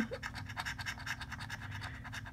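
A coin scraping the scratch-off coating off a paper lottery ticket in quick, repeated strokes.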